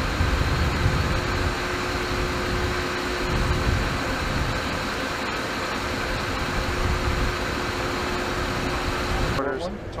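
Steady outdoor machinery hum and hiss over an uneven low rumble, with one faint steady tone running through it. It cuts off shortly before the end.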